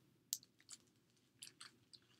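Faint, scattered small clicks and crinkles, about half a dozen in two seconds, from a hardcover picture book in a clear plastic library jacket being handled and shifted in the hands.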